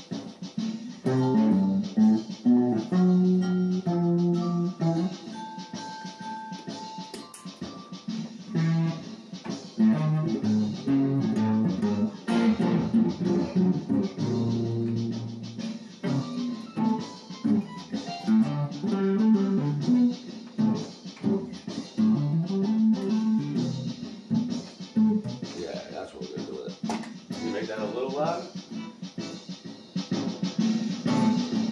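Electric guitar played freely in a jam, single notes and chords changing throughout, with a rising slide up the neck near the end.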